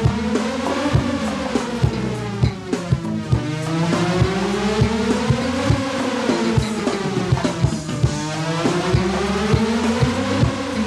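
Instrumental band music: a drum kit keeps a steady beat, about two hits a second, under a sweeping effect whose pitch rises and falls in slow arches, peaking about every five seconds.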